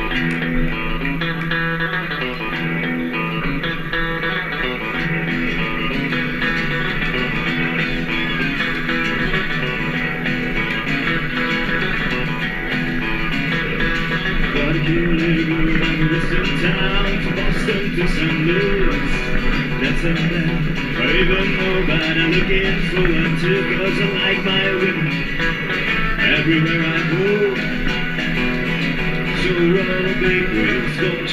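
Live country/rockabilly trio playing an instrumental passage: electric lead guitar over strummed acoustic rhythm guitar and upright double bass, with no singing. The lead line's notes bend and waver, and the band grows a little louder about halfway through.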